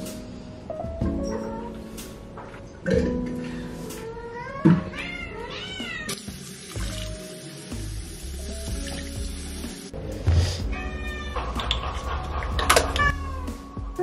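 Background music, with a cat meowing several times in two bouts. Between them, a tap runs into a bathroom sink for a few seconds.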